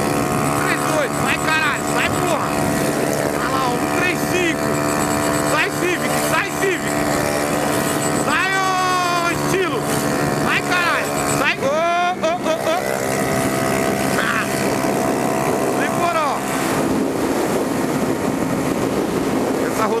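Yamaha Factor 150's single-cylinder engine running steadily at high revs near top speed, about 133 km/h, with wind rushing over the microphone.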